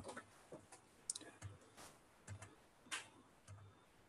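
Near silence broken by several faint, scattered clicks from a computer keyboard and mouse being worked.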